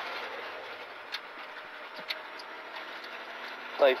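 Renault Clio Rally4's turbocharged four-cylinder engine and road noise heard from inside the cabin, a steady drone that eases a little, with a few faint clicks.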